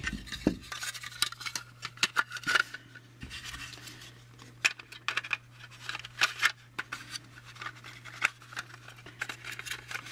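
Small clicks and scrapes of plastic model-car parts being handled, as a wheel and the plastic chassis of a model kit are fitted and pressed into the car body, over a steady low hum.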